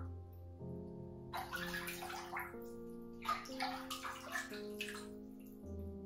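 Bath water sloshing and splashing in a filled bathtub as a person moves in it, in several bursts between about one and five seconds in, over background music of held notes.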